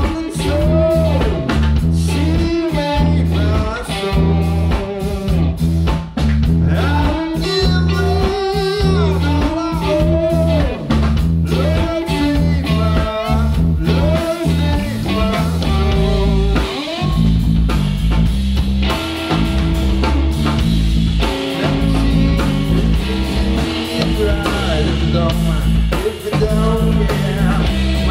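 Live band music: electric guitar playing bent, bluesy notes over electric bass and a drum kit. About two-thirds of the way in the sound grows fuller, with more cymbal wash on top.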